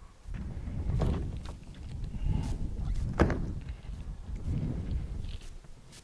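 Rear ramp door of an enclosed car trailer being lowered by hand: low rumbling with a few knocks and clanks as it swings down, the sharpest knock about three seconds in.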